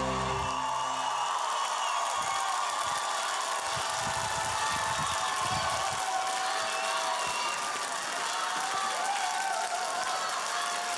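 The song's final chord dies away about a second in, leaving a studio audience cheering and applauding steadily, with shouting voices over the clapping.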